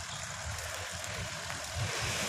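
Steady wind rush and road noise on the microphone of a moving bicycle rolling along a paved road.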